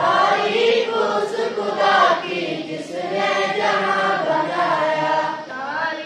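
A large group of schoolboys chanting a morning prayer together in unison, their many voices rising and falling in a sung recitation.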